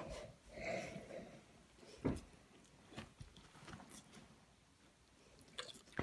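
A St. Bernard breathing hard, heard faintly: a soft, drawn-out breath in the first second, then a short soft knock about two seconds in.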